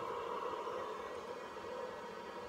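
Small cooling fans on solar charge controllers running: a steady rushing hiss with a faint steady tone.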